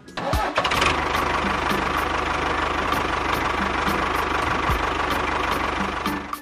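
Tractor engine starting about a third of a second in, then running at a steady idle with fast, even firing pulses.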